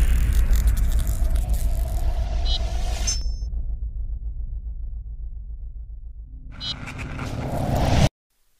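Cinematic logo-sting sound effects: a deep rumble with a glittering high shimmer that drops out about three seconds in, the rumble then fading, followed by a rising whoosh that swells over the last second and a half and cuts off suddenly.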